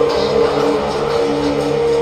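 Ambient chillout music with long, steady held tones.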